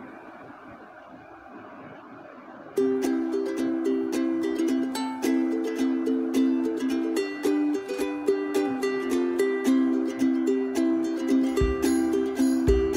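Background music with quick plucked notes in a steady rhythm, starting suddenly about three seconds in after a faint hush.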